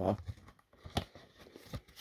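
A paper slipcover being eased off a disc case, with light rustling and a few sharp clicks of the case.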